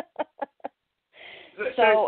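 A person's laughter tailing off in four short, quick bursts that fade, then after a brief gap speech begins.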